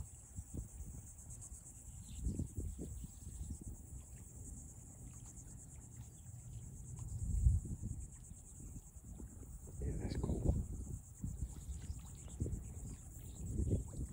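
A steady, high-pitched chorus of insects buzzing in the marsh, with a fine rapid pulse, over a few louder low rumbles that swell and fade.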